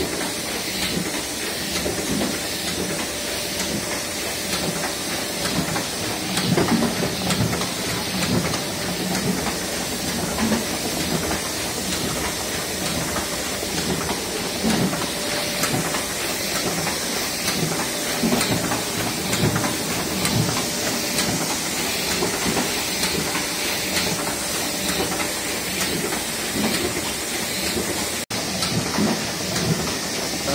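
A single-colour Roland Miehle Parva offset printing press running steadily as it prints sheets of board, a dense, even mechanical noise. The sound drops out for a moment near the end.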